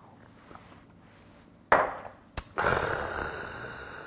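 A sharp breath out after a shot of soju is downed, nearly two seconds in. About half a second later comes a single click of the shot glass set down on the wooden table, then a long breathy exhale that fades.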